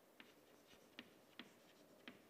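Chalk writing on a chalkboard: about three faint, sharp taps as the chalk strikes and strokes the board.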